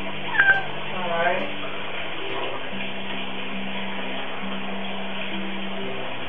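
A Siamese-mix cat meows twice near the start, two short calls about a second apart, the second lower than the first, over soft background music with long held notes.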